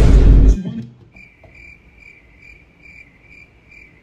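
A loud, brief burst of noise right at the start, then a cricket-chirping sound effect: short, even chirps a little over two a second, the stock 'crickets' gag for an awkward silence.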